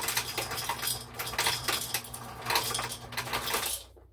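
Ice cubes clattering and clinking into a glass mason jar, a rapid run of clinks that stops suddenly near the end.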